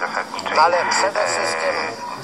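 A man's voice in a radio talk: a few clipped syllables, then one vowel drawn out and held at a steady pitch for about a second.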